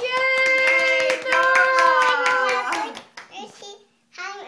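A toddler singing two long, high held notes with many quick hand taps under them; the singing stops a little under three seconds in, and a few fainter taps follow.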